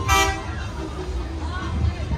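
A short horn toot right at the start, lasting about a quarter of a second, over a steady low rumble and faint voices.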